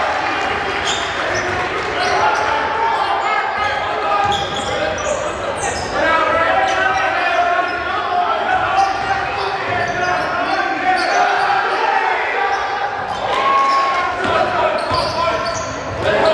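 Live game sound in a basketball gym: a basketball dribbling on the hardwood court under the voices of players and spectators, echoing in the large hall.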